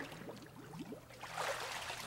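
Water sloshing and splashing in a church baptistry as a person is dunked fully under and lifted back up, growing louder about a second and a half in.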